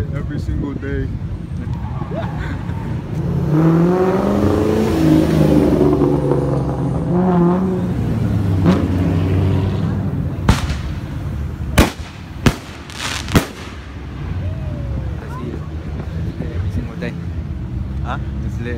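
Car engines running and revving, with gliding rises and falls in pitch and loud noise from about three to eight seconds in, over the low rumble of idling cars and voices from a crowd. About ten seconds in come five sharp bangs in quick succession.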